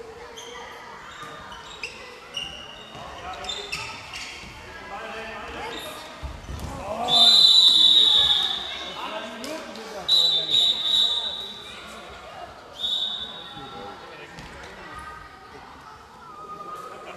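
Referee's whistle: one long blast of about two seconds, then two shorter blasts, as play is stopped, over players' voices and the ball bouncing on the hall floor.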